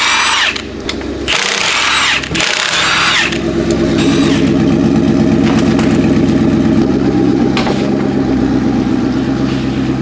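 A cordless impact wrench hammers at a wheel's lug nuts in two short bursts. From about three seconds in, a car engine runs steadily, its pitch shifting slightly around the seventh second.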